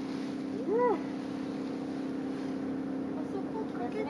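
A steady low motor drone, like a distant engine, runs throughout. About a second in, a single short voiced call rises and falls in pitch, the loudest moment.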